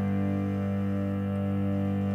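Background score music: one steady chord held without change, its lowest notes strongest.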